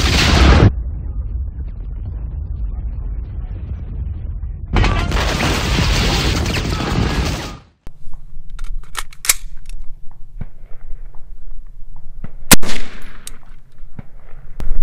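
Loud, dense intro sound effects in two bursts over the first eight seconds, cut off abruptly. Then, near the end, a single sharp, very loud 5.56 mm rifle shot from a short 11.5-inch-barrel carbine, with a brief echo.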